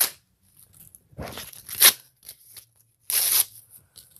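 Paper DVD cover artwork being ripped: two short tearing sounds, the first about a second in, the second about three seconds in.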